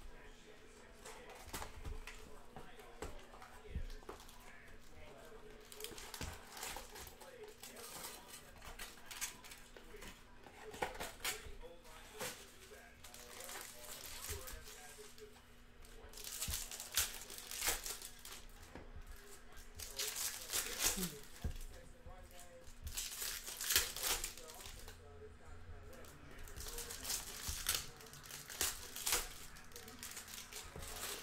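Foil trading-card pack wrappers crinkling and tearing as packs are opened by hand, in repeated bursts that grow louder in the second half.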